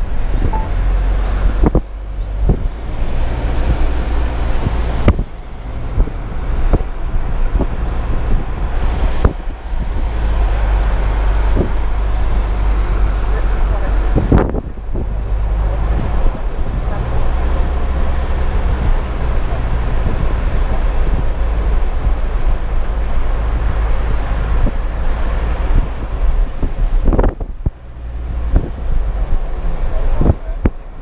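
Car cabin noise while towing a caravan: a steady low rumble from the engine and tyres, with occasional sharp knocks and clicks as the car rolls over the road.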